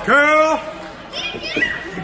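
A child in the crowd shouting once, a loud high-pitched yell in the first half second, followed by softer scattered voices of other spectators.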